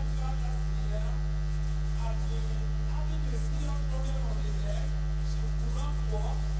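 Loud, steady electrical mains hum on the sound system, with faint, indistinct voices underneath.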